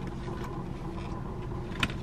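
Steady low rumble of a car idling, heard inside the cabin, with a faint steady hum. A single short click near the end.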